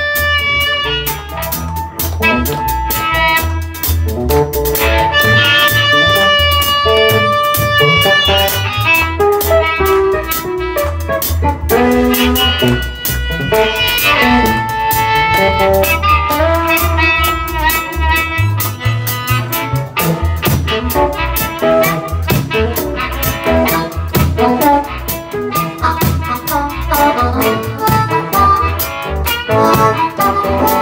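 Live blues band playing an instrumental passage: harmonica cupped to a vocal microphone takes the lead with held, bending notes over electric guitar, upright bass and a drum kit.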